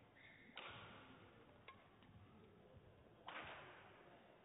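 Two short swishing sounds, about three seconds apart, over a quiet hall, with a faint click between them.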